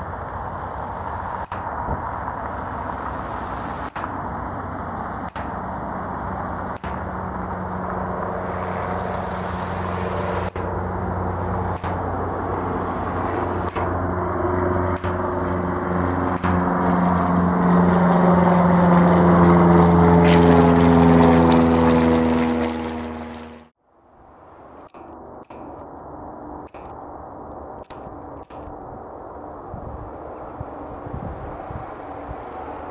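Cessna 172's piston engine and propeller at climb power, growing steadily louder as the plane passes overhead, its pitch falling as it goes by. The sound cuts off abruptly about 24 seconds in, giving way to a much fainter steady noise.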